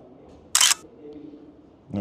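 A camera shutter firing once, a sharp click about half a second in, as a portrait is taken.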